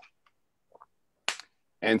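A pause in talk with one short, sharp click a little over a second in.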